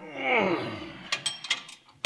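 A man's short vocal sound sliding down in pitch, then several light metallic clicks from a wrench tightening lock nuts on the front spindle's steering-arm bolts.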